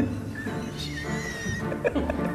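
Stifled, muffled laughter from several people hiding their faces, with squeaky breaths, over a steady background of music.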